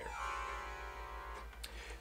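Autoharp strings strummed once, ringing together as one bright chord and fading out after about a second and a half.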